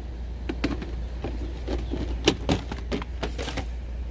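Handling noise: scattered light clicks and taps as a phone camera is moved and turned, over a steady low hum.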